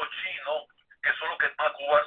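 A person speaking over a telephone line, the voice thin and narrow, with a brief pause a little over halfway through.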